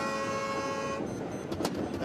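A boat horn sounding one long, steady blast of about a second, the signal for the race start, followed by a sharp click near the end.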